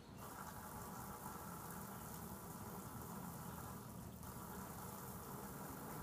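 Garden hose spraying water while a push lawn mower is washed down: a faint, steady hiss of spray that comes on suddenly at the start.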